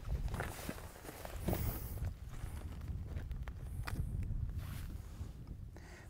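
Footsteps and scuffs on rocky, gravelly ground, with scattered light clicks, as a person walks and kneels.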